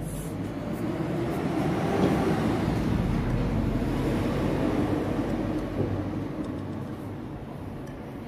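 A passing vehicle: a broad rumble that swells over the first couple of seconds, holds, and fades away near the end.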